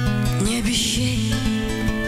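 Acoustic guitar strummed over held bass notes: the instrumental accompaniment of a chanson song, heard in a gap between sung lines.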